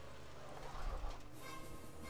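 Dramatic orchestral film music, with a short rush of noise about halfway through from a car's tyres spinning away on gravel.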